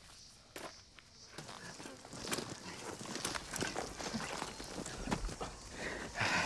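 Irregular crunching and crackling of footsteps and movement over dry leaf litter, sticks and dirt, growing busier after about a second and a half.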